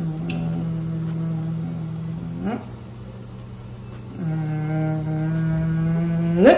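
A woman humming two long, steady low notes, each ending in a quick upward slide in pitch; the second note runs a little past the end.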